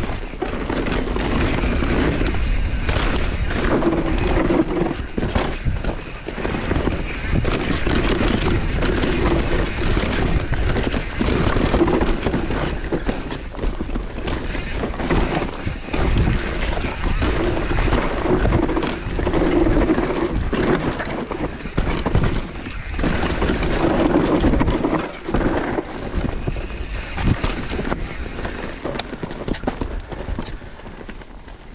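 Propain Spindrift enduro mountain bike descending a dirt singletrack at speed. The tyres roll and skid over loose dirt, and the chain and frame rattle with frequent sharp knocks over roots and rocks. Wind noise on the microphone runs under it.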